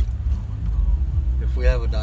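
Steady low rumble of a car's engine and road noise heard inside the cabin while driving, with a voice speaking briefly near the end.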